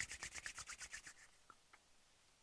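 Hands rubbing briskly together, palm on palm, in quick even strokes about seven a second that stop after just over a second. A couple of faint clicks follow.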